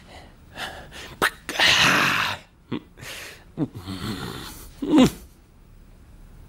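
A person's short breathy vocal noises: a long hissing huff about two seconds in and several brief cries falling in pitch, the loudest near the end.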